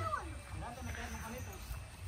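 Faint voices talking, over a low wind rumble on the microphone.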